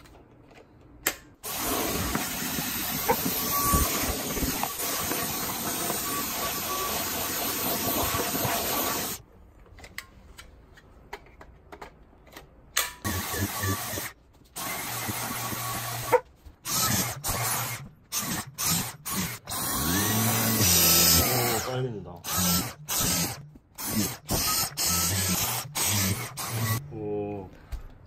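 Dyson V10 cordless stick vacuum running steadily for about seven seconds, then heard again in a string of short stretches broken by sudden cut-offs.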